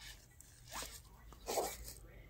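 Two short whooshing sound effects from an EMO desktop robot, the second louder, each sweeping downward in pitch.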